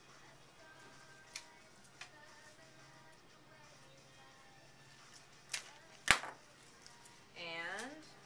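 Florist's hand cutters snipping greenery stems: a few sharp clicks and one much louder snap about six seconds in. Faint background music runs throughout, and a short rising tone comes just before the end.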